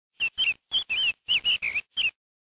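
A small bird chirping: a quick run of about eight short chirps, each wavering up and down in pitch.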